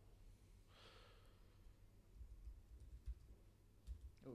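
Near silence with a faint breath or sigh about a second in.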